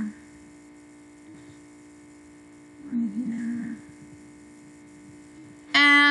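Steady electrical hum, a stack of even tones, picked up by the recording. A short murmured voice sound breaks in about three seconds in.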